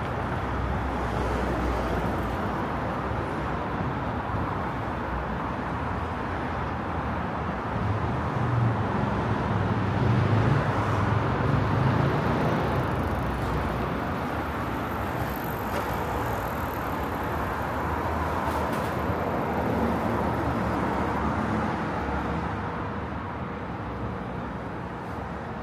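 Road traffic on a wide city street: a steady wash of passing cars, with a heavier vehicle's low rumble swelling up and fading about halfway through.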